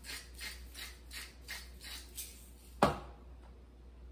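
Salt being shaken from a salt shaker into a bowl, in a run of quick shakes at about three a second that stop a little past halfway. A single sharp knock follows.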